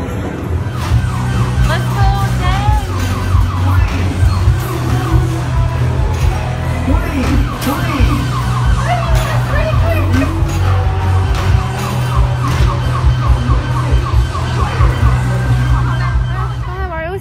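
Arcade game machines sounding together: rapid warbling, siren-like electronic tones that repeat over a steady deep hum, with scattered clicks and knocks.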